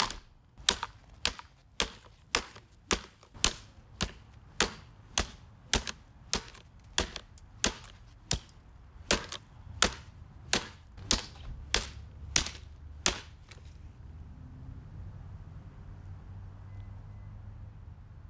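An SMC table fan's motor housing being smashed against a brick: about twenty sharp, hard impacts at a steady pace of roughly two a second, stopping about two-thirds of the way through.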